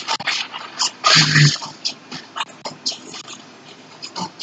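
A man laughs briefly about a second in and says a couple of words, amid a scatter of short, high squeaks and clicks.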